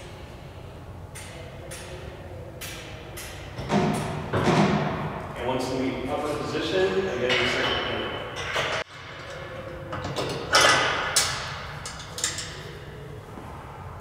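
Compressed air hissing through a two-way momentary valve as a pneumatic cylinder raises a stainless-steel auger conveyor, with metallic clicks and knocks from the tube and frame. The hiss cuts off suddenly about nine seconds in, and a shorter burst with sharp knocks follows.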